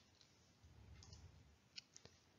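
Near silence: faint room tone with a short faint click near the end.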